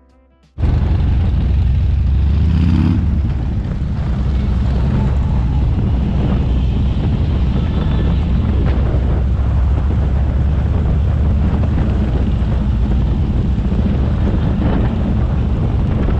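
Motorcycle on the move, with steady wind on the microphone and engine noise underneath, cutting in suddenly about half a second in.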